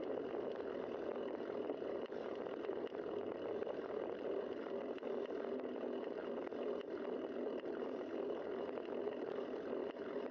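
Steady wind and rolling road noise on a bicycle-mounted camera while riding, an even rush with no single event standing out.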